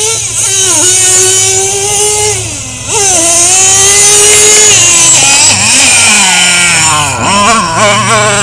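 Traxxas T-Maxx RC monster truck's nitro engine revving high and unloaded while the truck lies flipped on its side. It dips sharply just before three seconds in and picks straight back up, then sags and revs up again near the end.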